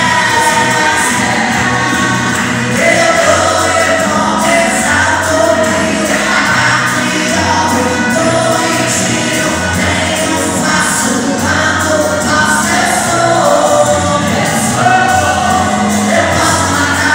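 Gospel song sung by a man through a handheld microphone and PA, with held, bending notes over an instrumental accompaniment that carries a steady low bass line.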